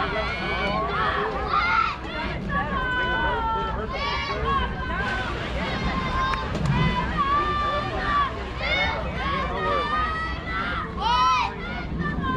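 Many overlapping voices, several of them high-pitched, calling out and chattering: general crowd and team chatter around a softball field between plays.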